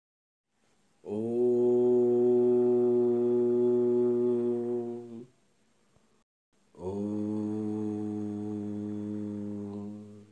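A man's voice chanting two long, steady, low held tones, each about four seconds, with a short pause between; the second is a little quieter.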